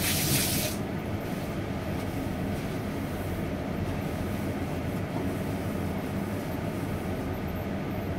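Steady low rumble of a kitchen range-hood fan and a lit gas stove burner. A loud hiss cuts off suddenly under a second in.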